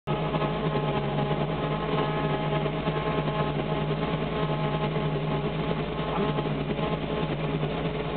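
Supercharged, stroked 302 small-block V8 of a 1965 Mustang idling steadily, heard from inside the car.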